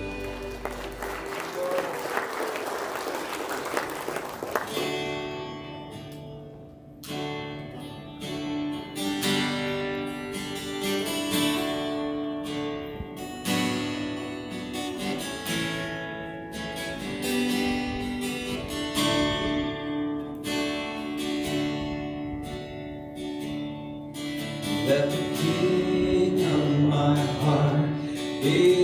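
Live worship band music: after a fading noisy wash in the first few seconds, strummed acoustic guitar chords over keyboard and electric guitar play a song intro, and a voice starts singing near the end.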